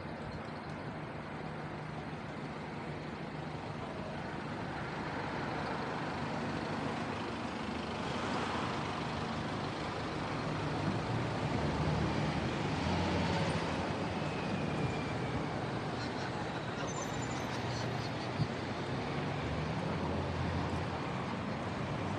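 Road traffic on a busy city street: cars, taxis and vans passing, a steady rumble that swells as vehicles go by about eight seconds in and again around twelve to fourteen seconds. A single sharp click near the end.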